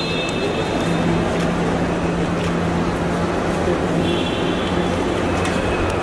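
Steady din of road traffic and a crowd at an airport terminal kerb, with a continuous low hum underneath.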